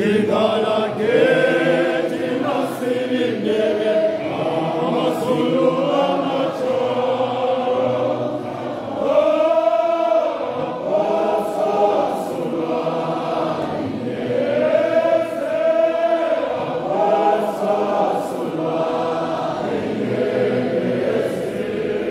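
Church congregation singing a hymn together in chorus, many voices holding long notes.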